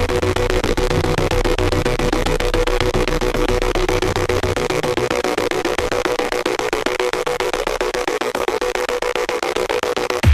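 Experimental electronic music: a dense, noisy texture with steady held tones and a rapid stuttering flicker. A low bass layer drops out about halfway through.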